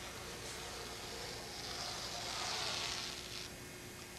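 Rotary cutter rolling through fiberglass cloth on a hard plastic cutting mat: a soft hiss that swells for about two seconds in the middle, then fades.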